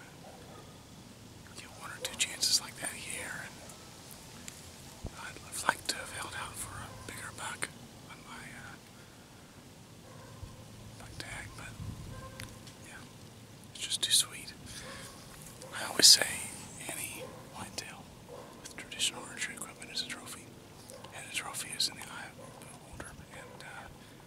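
A man whispering in short phrases with pauses between them.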